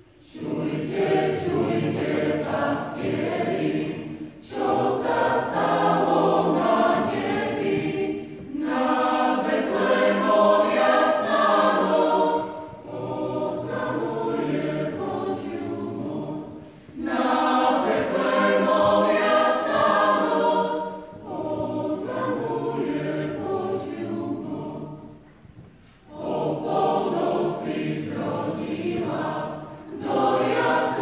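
Mixed choir of men and women singing in a church, starting together at the outset and going on in phrases of about four seconds, with short breaks between them.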